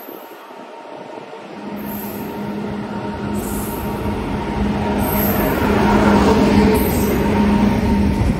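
Electric locomotive hauling a passenger train along a station platform, growing steadily louder as it comes in and passes close. A rumble of wheels on rails runs under a steady hum from the locomotive.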